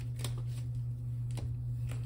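A stack of tarot cards handled and shuffled in the hand: a few soft clicks of card against card, over a steady low hum.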